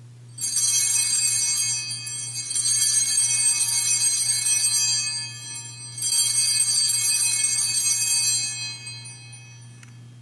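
Altar bells rung three times at the elevation of the host after the consecration, each ring a cluster of high, bright tones that swells and then dies away.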